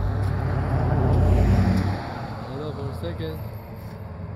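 Pickup truck passing close by: engine and tyre noise swell to a peak about a second and a half in, then fall away suddenly at about two seconds.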